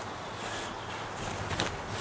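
A person moving on the ground, with shuffling footsteps and one brief sharp sound about one and a half seconds in.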